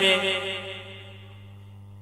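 Soft background music in a pause of the speech: a single held note fades over about the first second and then stays faint, over a steady low hum.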